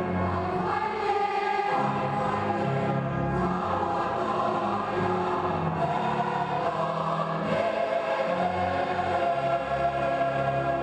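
Choir singing slow, held chords, the low voices stepping from note to note every second or two.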